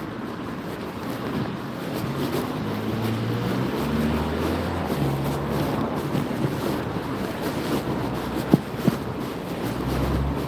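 Wind buffeting a phone microphone over the low rumble of a passing vehicle's engine, which steps up in pitch for a few seconds in the middle. Two sharp clicks come near the end.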